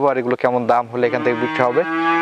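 A calf mooing: one long, even-pitched call starting a little past halfway.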